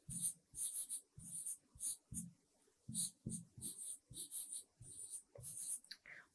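Pen strokes on an interactive whiteboard screen as words are handwritten: faint, short, irregular scratches and taps, several a second.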